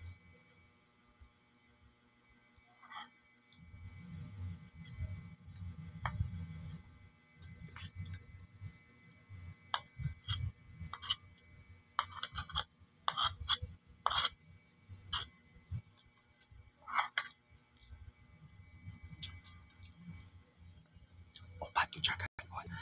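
Metal spoon clicking and scraping against a plastic plate, with a dense run of sharp taps in the middle.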